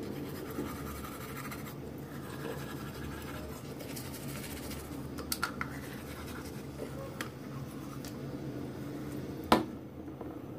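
Battery-powered Crest electric toothbrush running and scrubbing teeth, a steady buzzing scratch, with a few light clicks midway and one sharp knock near the end.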